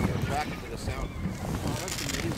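Gulls calling in a feeding flock over a herring bait ball, a few short rising-and-falling cries, one clearest about half a second in, over a steady low rumble of wind on the microphone and boat noise.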